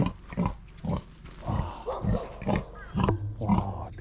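A black pig grunting, a string of short separate grunts.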